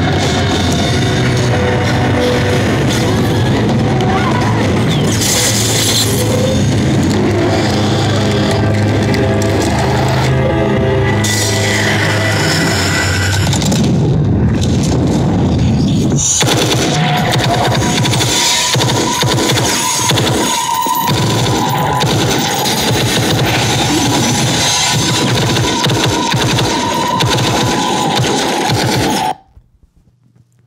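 Action-film soundtrack, mostly music, played loud through a Bose TV Speaker soundbar and picked up by a microphone about 12 feet away. It cuts off suddenly near the end.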